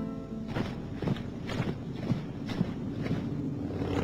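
A run of irregular knocks, some close together and some spaced apart, with faint music held under them.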